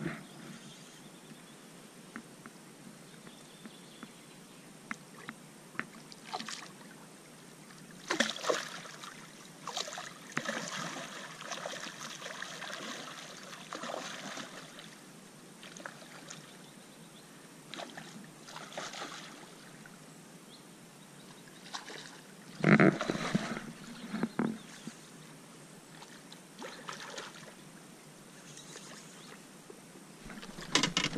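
Water splashing and sloshing in short irregular bursts, loudest in a cluster about two-thirds of the way through.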